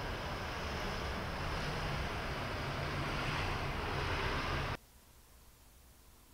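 Wind buffeting the microphone: a loud, even rushing noise with a deep rumble, which cuts off suddenly about three-quarters of the way through.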